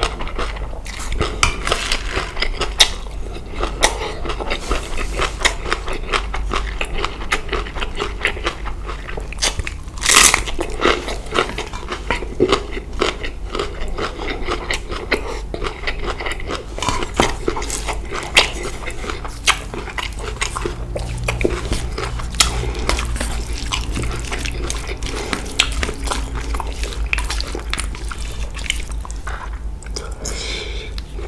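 Close-miked chewing and crunching of spicy green papaya salad with rice noodles: a dense, continuous run of crisp crunches, with one louder sharp crunch about ten seconds in.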